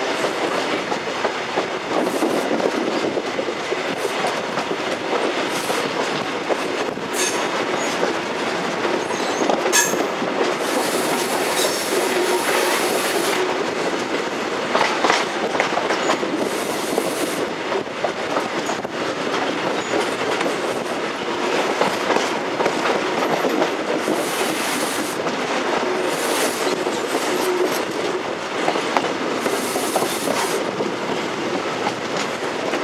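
Passenger train running along the line, heard from on board: a steady rail rumble with wheels clattering over joints and pointwork, and a few brief high-pitched bursts scattered through.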